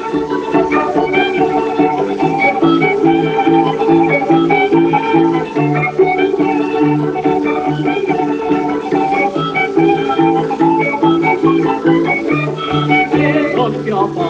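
Instrumental passage of a Réunionese creole dance tune played by a small band, with a bass line of short repeated notes, about two to three a second, under melody lines.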